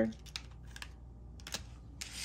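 A few light, sharp clicks and taps, spaced unevenly: a hand with long nails touching and moving tarot cards laid on a table.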